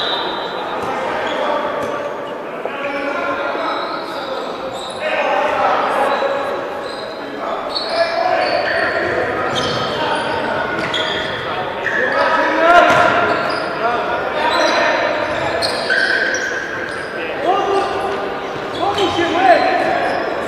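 Indoor futsal match: the ball being kicked and bouncing on the sports-hall floor amid players' shouts and calls, all echoing in a large hall.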